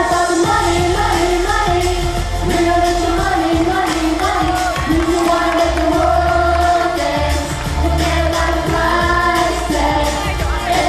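A group of young singers singing into microphones over amplified pop music with a steady beat.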